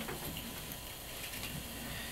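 Quiet steady hiss of room tone with faint handling noise from small plastic camera parts being manipulated by hand, including a slight tick near the start.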